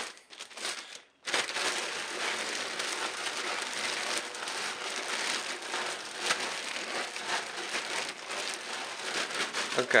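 Dry cat kibble, coated in a moist rutin mix, being shaken and tumbled inside a plastic zip-top bag: a steady rattling rustle with the bag crinkling. It starts about a second in.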